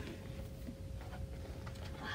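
Quiet room with a faint steady hum and a few soft clicks of a picture book being opened to its first page.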